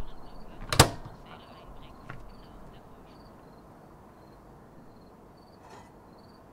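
A microwave oven's door latch clicks once, sharply, just under a second in, followed by a softer knock. Faint, short, high chirps repeat irregularly over a low room hush.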